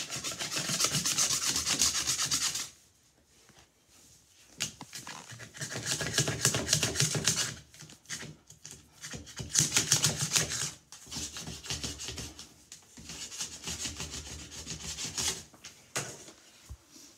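Small plastic hanger scraping soap scum off ceramic wall tiles: rapid scratchy back-and-forth strokes in several runs. There is a pause of about two seconds after the first run, and the last run is lighter.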